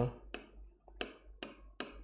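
Pen tip tapping and clicking against a writing screen as code is handwritten, about five short, uneven clicks in two seconds.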